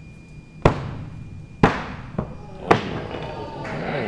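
Throwing axes striking wooden target boards on practice throws: three sharp impacts about a second apart, with a smaller knock between the second and third.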